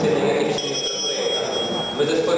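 A high ringing tone made of several steady pitches at once, starting suddenly about half a second in and holding for about a second and a half, over a man speaking.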